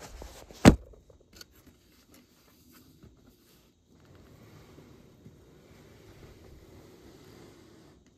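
Handling noise: one sharp knock under a second in, then a few light clicks and a faint, steady rustle.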